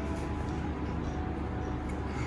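A steady low background hum with no distinct event.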